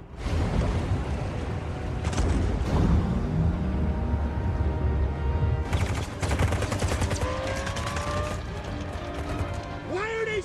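Action-film sound mix: a heavy deep rumble under dramatic score music, then a rapid burst of machine-gun fire about six seconds in, lasting a second or two.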